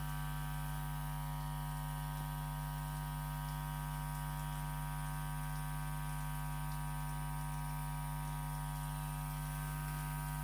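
Steady electrical mains hum with a buzzing stack of overtones from a switched-on hi-fi system with no record yet playing.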